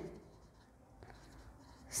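A red pen writing words on paper, faint.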